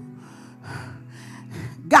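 Sustained keyboard chords held underneath, with a run of short, heavy breaths and gasps into a close handheld microphone between preached phrases; speech resumes at the very end.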